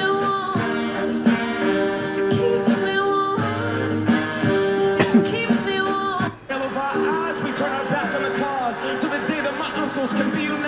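Live pop performance on a television broadcast: a woman singing a slow melody over a band with held notes, with a brief break a little past the middle and a man's voice at the microphone near the end.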